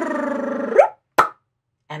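A woman's wordless vocal sound effect, one drawn-out falling tone ending in a quick upward swoop, made while erasing a whiteboard by hand, followed a little after a second in by a single sharp pop.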